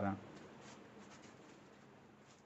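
Faint squeaks and scratches of a marker pen writing on a whiteboard, in a few short strokes.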